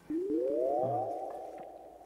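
Edited-in TV sound effect: a sliding electronic tone that rises over about a second, then holds steady and fades out.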